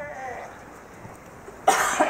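A person coughs once, loudly, near the end, after a short falling vocal sound at the start.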